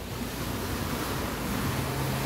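Sea surf washing steadily over the rocky reef shore, mixed with wind on the microphone.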